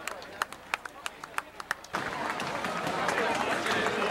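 Footsteps of a pack of runners on a paved street, a quick irregular patter of footfalls. About halfway through the sound changes abruptly to louder crowd voices chattering over the footsteps.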